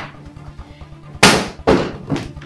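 Two sharp bangs about half a second apart, the first the louder, each with a short fading tail, over quiet background music.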